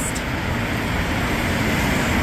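Road traffic on a city street: a car passing, heard as a steady rushing noise that builds slightly.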